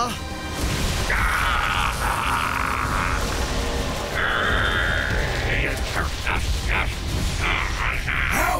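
Cartoon steam locomotive's whistle, two long blasts about a second apart, over background music, followed by a run of short knocks.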